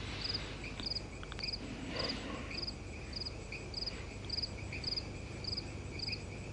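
Crickets chirping at night, short pulsed chirps repeating evenly about twice a second.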